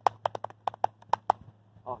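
Two people clapping their hands: a quick, slightly uneven run of about a dozen sharp claps that stops about a second and a half in.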